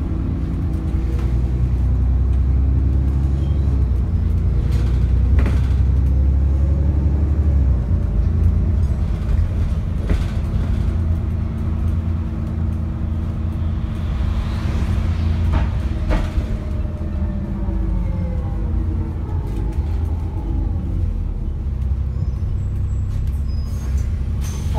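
Diesel engine and running noise of an ADL Enviro 400 double-decker bus, heard from inside the passenger saloon: a heavy low rumble, strongest for the first eight seconds and then easing, with the pitch rising and falling as the revs change. A few sharp knocks and rattles from the body come through, about five, ten and sixteen seconds in.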